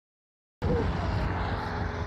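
Road traffic passing on a multi-lane highway, cutting in abruptly about half a second in and easing off near the end, with a heavy low rumble.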